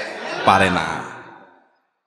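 A man's voice through a public-address system: one drawn-out, breathy word ("na") that fades away with hall echo, then dead silence for the last half second.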